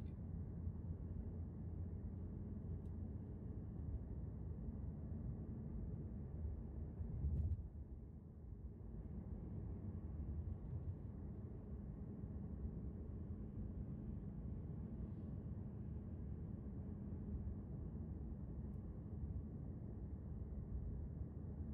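Steady low rumble of a car driving at road speed, heard from inside the cabin: engine and tyre noise on the road. A brief louder low thump comes about seven seconds in.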